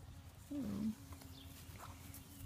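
A young goat kid bleating once, a short call that falls in pitch about half a second in.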